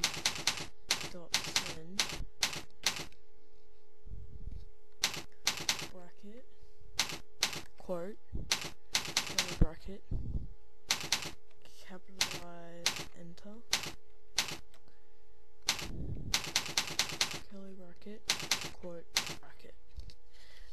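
Computer keyboard being typed on: irregular clusters of quick key clicks with short pauses between words.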